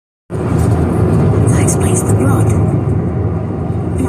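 Steady low road and engine rumble of a car driving along, heard from inside the cabin, starting abruptly a moment in.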